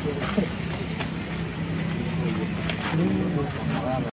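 Indistinct human voices talking in the background over a steady noise haze, with one voice holding a low note through the middle.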